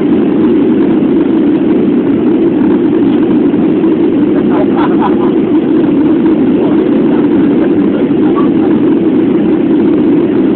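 Steady in-flight cabin noise of an airliner, heard from inside the cabin: a constant low drone of engines and rushing air.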